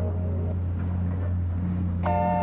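Background music: a low, steady synthesizer drone held between chords, with the higher chord tones faded out.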